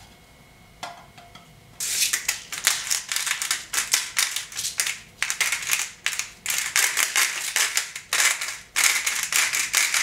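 Hand-turned pepper mill grinding over a plate: rapid crackling strokes, several a second, starting about two seconds in, with a brief pause near the end.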